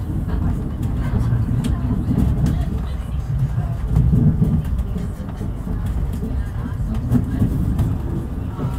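Running noise inside a moving passenger train coach: a steady low rumble from the wheels and track, with a few faint clicks as the wheels cross rail joints and points.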